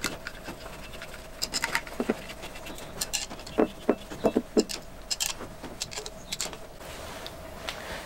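Light, scattered clicks and taps of steel on steel as a split steel sleeve is spread by pushing in its set screws and worked onto a tool and cutter grinder shaft.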